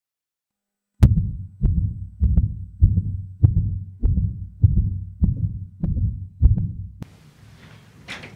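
Heartbeat sound effect: about eleven deep thumps at a little under two a second, a tense, rapid pulse. It stops about a second before the end, leaving faint room hiss.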